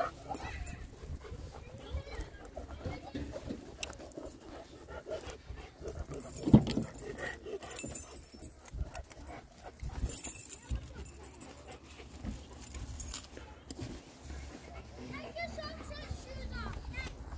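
Large Caucasian Ovcharka dog panting, over handling and jingling noises as a car's rear door is opened and things are moved about, with one sharp knock about six and a half seconds in.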